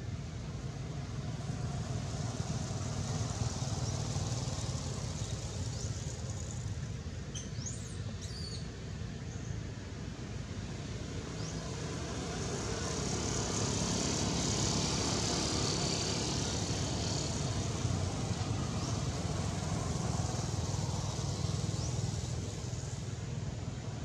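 Outdoor background noise: a steady low rumble with a high hiss that grows louder around the middle, and a few short high chirps about seven to eight seconds in.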